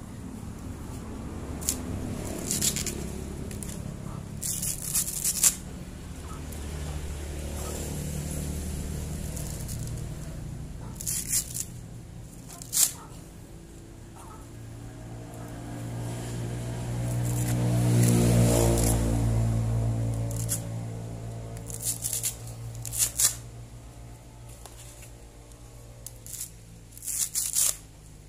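Dry coconut husk being torn apart by hand into fibre: short rough ripping strokes at irregular intervals. Under it, a low droning hum swells to its loudest about two-thirds of the way through and then fades.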